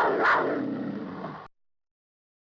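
Lion roar sound effect: a rough roar that swells twice, then fades and cuts off suddenly about one and a half seconds in.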